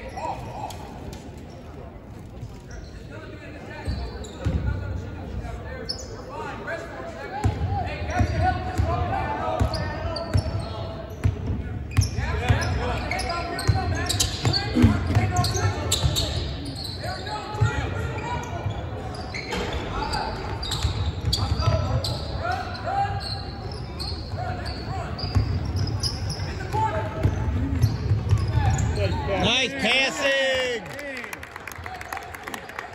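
Basketball bouncing on a hardwood gym floor during play, under shouting voices of players and spectators that echo in the large gym. It is quieter at first and busier from about four seconds in.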